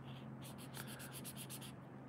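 Faint scratching of a felt-tip marker pen (Faber-Castell Connector pen) on paper, in quick back-and-forth colouring strokes of about nine a second, starting about half a second in.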